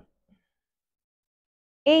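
Near silence between spoken rep counts, with a brief faint sound at the very start; the instructor's voice counting begins near the end.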